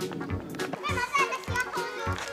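Children's voices: high-pitched calls and chatter of young children playing, loudest in the second half, with a few light knocks.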